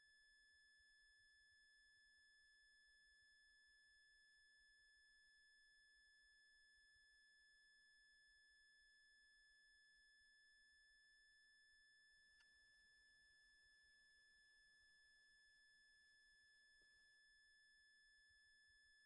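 Near silence, with only a very faint steady high-pitched tone.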